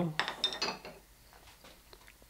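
A few light clicks and clinks of carving gouges being handled in the first second, then quiet.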